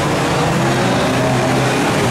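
Several Hot Rod race cars' engines running hard together as the pack races round a bend, their engine notes overlapping in one steady, loud din.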